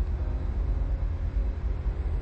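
Steady low rumble with a faint even hiss, unbroken throughout and with no distinct event in it.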